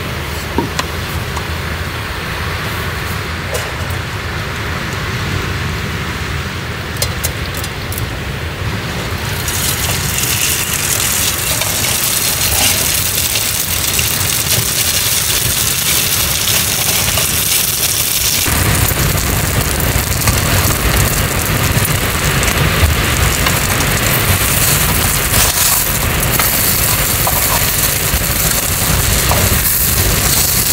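Food sizzling in a frying pan over a portable gas stove, with the burner's steady hiss. The sizzle fills in about a third of the way through, and a deeper rushing joins a little past halfway, making the sound fuller and louder.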